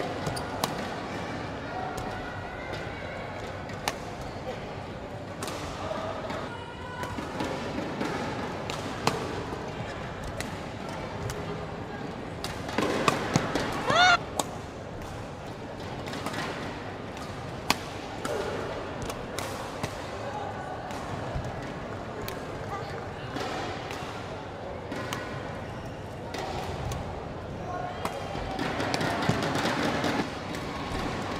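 Indoor badminton hall ambience: sharp clicks of shuttlecocks struck by rackets and shoes on the court floor, over a steady babble of voices from surrounding courts. About halfway through there is a louder moment with one short, high squeal.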